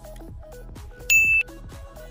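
Electronic background music with a steady beat. About a second in, a short, loud electronic beep sounds: a single high tone lasting about a third of a second, as the quiz countdown timer nears zero.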